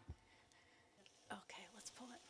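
Near silence: hall room tone, with a faint low thump just after the start and faint whispering about a second and a half in.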